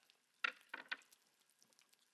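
Salt shaken from a small shaker onto food: two short, faint shakes about half a second and just under a second in.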